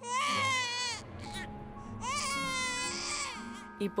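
A young child crying in a tantrum: two long, wavering wails, the first in the opening second and the second about two seconds in, over soft sustained background music.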